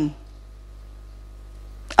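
Lecture-hall room tone with a steady low hum, in a pause between a woman's amplified words. Her speech trails off at the very start and resumes near the end.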